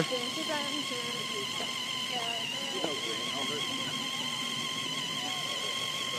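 Electric RC car's brushed motor giving a steady high-pitched whine as it drives, with faint voices in the background.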